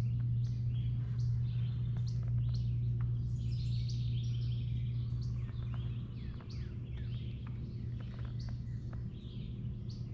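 Small birds chirping and calling in many short, quick high notes, over a steady low hum.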